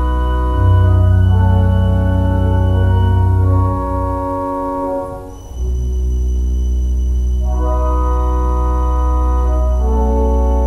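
1889 Father Willis three-manual pipe organ playing loud, slow, sustained chords over deep pedal notes. The chord dies away about five seconds in, and a new one enters and is held, with higher notes added a couple of seconds later.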